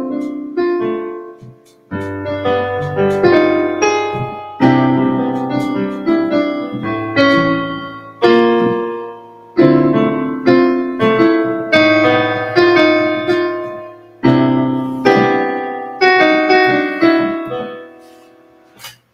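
Electronic keyboard with a piano sound, played with both hands: a slow chord progression with bass notes, each chord struck and left to die away, with a brief gap about two seconds in and the last chord fading near the end. The progression holds some notes that sound strikingly different from the key.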